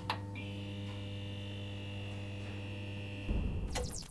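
Electronic logo-sting sound effect: a steady buzzing hum with a thin high tone above it. Near the end it breaks into glitchy crackles.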